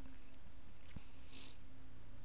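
Steady low hum over faint hiss, with a single faint click about a second in.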